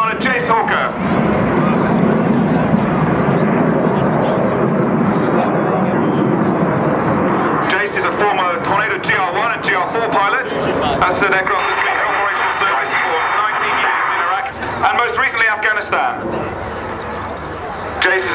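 Jet noise from the Red Arrows' nine BAE Hawk T1 jets climbing in formation overhead: a steady roar for the first several seconds, with voices talking over it in the second half.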